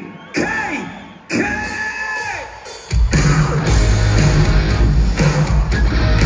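A singer's long, drawn-out yells through the PA in a big hall, then about three seconds in a live rock band comes in loud with drums, bass and distorted electric guitars.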